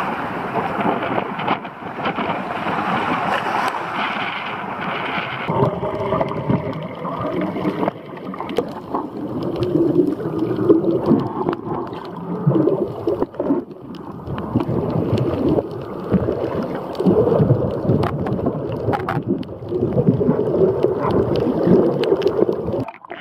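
Water noise from a camera at the waterline and under water: a brighter wash of surf for the first five seconds or so, then a lower, muffled underwater churning and bubbling as a snorkeler's fin kicks stir the water near the lens.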